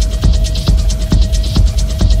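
Techno track with a steady four-on-the-floor kick drum about twice a second over a heavy bass. A single steady tone is held throughout, with fast hi-hats on top.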